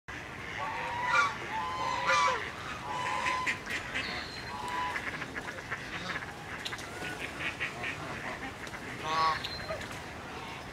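A small flock of domestic geese honking on the water. There are several separate honks, the loudest about a second and two seconds in and another near the end, with softer calls in between.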